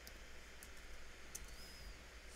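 A few faint computer-keyboard keystroke clicks over a low room hiss.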